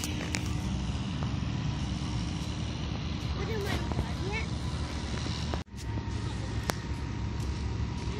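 Wind buffeting the phone's microphone outdoors, a steady low rumble, with faint distant voices in the background. The sound cuts out abruptly for a moment a little past halfway.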